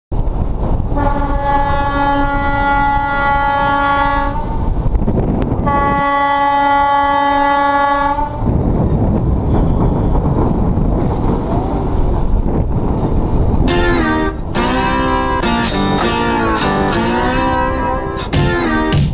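Passenger train's horn giving two long steady blasts of about three seconds each, over a continuous low rumble. About fourteen seconds in, guitar music with sliding notes comes in.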